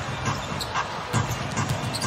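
Arena music playing in the background of a basketball game, with a basketball being dribbled on the hardwood court a few times.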